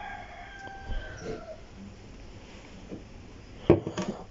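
A rooster crowing faintly once, a call about a second and a half long that falls in pitch at its end. A short knock follows near the end.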